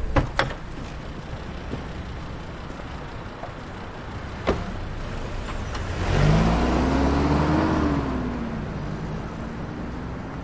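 A car engine revving up as the car pulls away, its pitch rising and then falling as it drives off. Before it, a few sharp clicks at the start and a single knock about halfway through.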